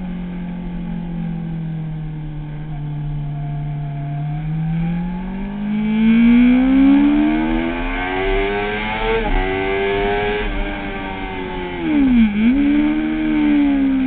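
Kawasaki ZX-6R inline-four engine heard onboard at track speed. The revs hold low for a few seconds, then climb steadily under hard acceleration, with a brief break in the rising note about nine seconds in. They ease off again, with a sudden short drop and recovery in revs near the end, over a steady rush of wind.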